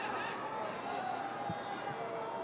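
Football stadium ambience during live play: faint, distant voices and shouts from players and a sparse crowd over a steady background hum, with one soft knock, like a ball being struck, about one and a half seconds in.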